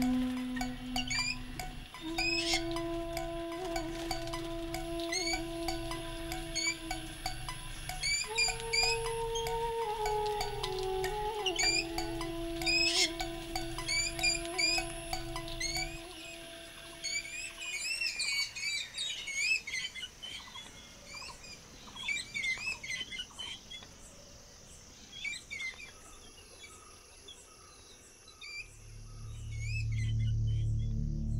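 Slow film music of long held notes over a low pulsing bed, with small birds chirping and twittering on top. The music drops away about halfway through, leaving a burst of busy chirping that thins out. Near the end a low ambient music swell rises.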